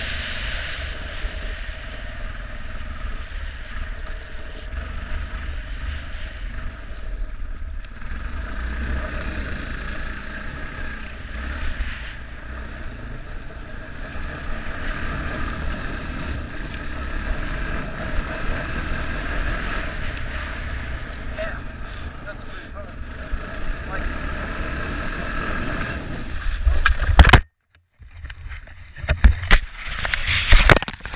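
ATV engine running steadily while riding over gravel, with wind buffeting the microphone. Near the end the noise rises to a loud peak and cuts out, then a string of loud irregular knocks and scrapes as the ATV crashes and the camera tumbles to the ground.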